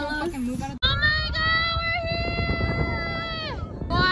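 A young woman's voice holding one long, high sung or squealed note for nearly three seconds, then sliding down in pitch at the end. Before it, less than a second of talk is cut off abruptly.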